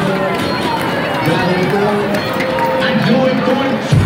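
Crowd of many people talking and calling out at once in a gymnasium, with no single clear voice. Loud music starts at the very end.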